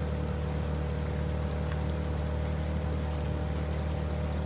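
Outboard motor pushing a small inflatable boat, running at a steady speed: an even drone that does not rise or fall.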